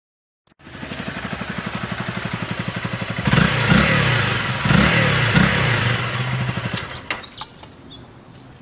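Honda CBR sport bike's single-cylinder engine running at a steady pulsing idle, which comes in abruptly about half a second in. It is revved twice in the middle, pitch rising and falling each time, then drops back and fades, with a few sharp clicks near the end.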